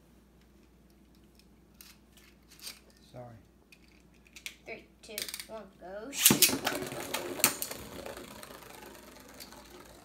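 Beyblade spinning tops launched into a plastic stadium about six seconds in: a sudden loud snap, then a fast rattling clatter of the tops spinning and knocking together, fading over the last few seconds. Faint clicks before the launch, from the tops being fitted onto the launchers.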